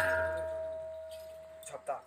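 A double-headed barrel drum rings out after its last stroke: one steady tone and a low hum fade away evenly over about a second and a half. A brief voice is heard near the end.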